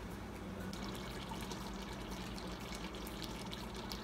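Pot of banga (palm-nut) soup cooking uncovered, bubbling and spattering with many small pops, which come thicker after about the first second, over a steady low hum.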